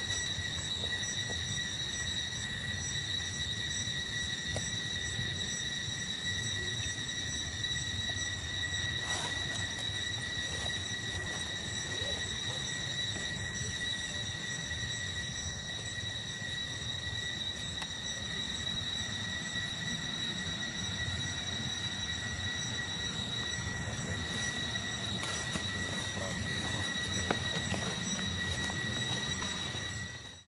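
Steady high-pitched insect drone, holding one pitch with overtones, over a low outdoor rumble, with a brief click near the end.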